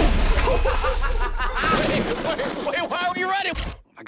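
A deep boom hit under a dense wash of sound, with people's voices over it that bend and rise higher near the end. It all cuts off sharply just before four seconds.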